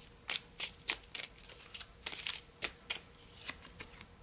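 A deck of oracle cards shuffled by hand: about a dozen quick, irregular snaps and flicks of card against card.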